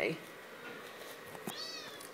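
A single click, then a moment later a short high-pitched animal cry that rises and falls in pitch.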